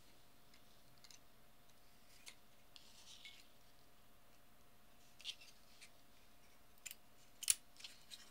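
Faint clicks and light scraping of a circuit board and a relay shield being handled and fitted together, a few scattered taps with a sharper click near the end, over a faint steady hum.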